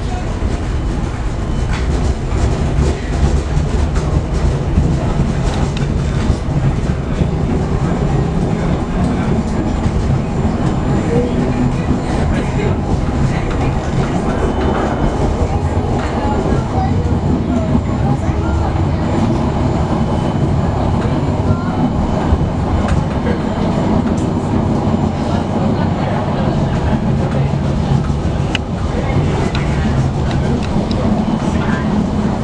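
Suburban HÉV train running along the line, a steady low rumble of the carriage on the rails with occasional faint clicks.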